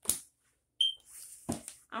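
A brief sharp noise at the start, then a single short, high-pitched electronic beep a little under a second in.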